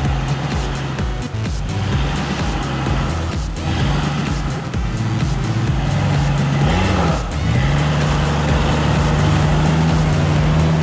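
A Jeep Cherokee XJ's engine as the SUV drives slowly along a dirt trail toward and past, with a brief rise about seven seconds in. Background music with held bass notes runs under it.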